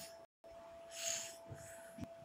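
A single breathy hiss about a second in, over a faint steady high-pitched hum that drops out briefly near the start.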